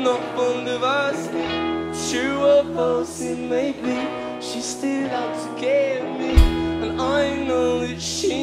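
Rock band playing live: a male lead vocal singing over electric guitars, bass guitar and drums with cymbal hits, and one heavy low drum hit a little past six seconds in.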